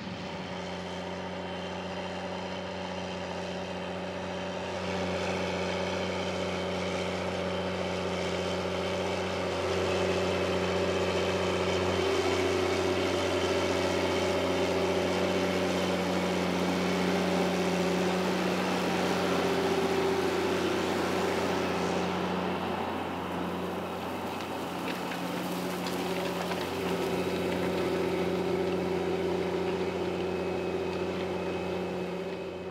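Challenger MT765B rubber-tracked tractor's diesel engine running steadily under load while pulling an eight-furrow semi-mounted Gregoire Besson plough. The note grows somewhat louder over the first ten seconds and dips briefly near the end.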